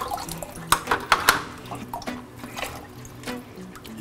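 Water splashing and dripping from a cut-open coral shipping bag into a plastic tub, with a few sharp clicks about a second in. Quiet background music plays underneath.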